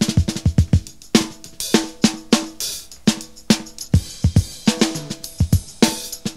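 Drum kit on a live 1970s jazz-rock recording playing a busy stretch of strikes on toms, snare, bass drum and cymbals. There is a quick run of falling tom hits in the first second, and a held chord sounds faintly beneath.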